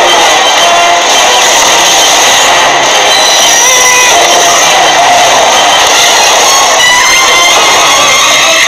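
Film trailer soundtrack playing loudly and evenly: music mixed with a dense, noisy layer of action sound effects.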